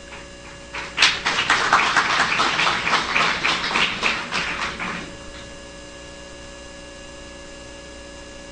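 Audience applause for about four seconds, starting about a second in and dying away, over a steady mains hum from the sound system.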